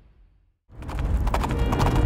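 Brief silence, then about 0.7 s in a loud dramatic soundtrack cuts in: a deep rumble with a rapid run of knocks, over music.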